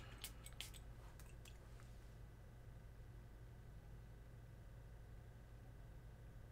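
A few faint, short clicks and spritzes from a perfume spray bottle being pumped onto the skin in the first second and a half, then near silence.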